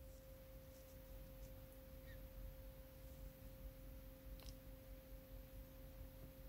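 Near silence with a faint, steady, high-pitched tone throughout, and a faint click about four and a half seconds in.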